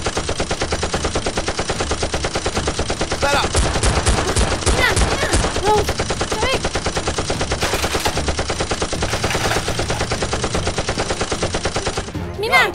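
Rapid automatic gunfire, a continuous stream of shots, with a few short rising-and-falling whines between about three and seven seconds in.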